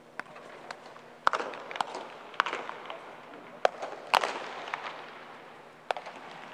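Sharp, irregular knocks of baseballs at practice, about seven in six seconds, the loudest about four seconds in, each echoing around the domed stadium.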